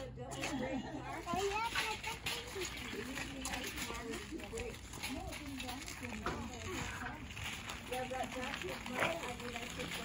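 Faint voices talking in the background, over the rolling of a metal wagon's wheels across flagstone paving.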